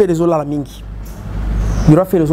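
A man's voice for a moment, then a low rumbling noise that swells over about a second.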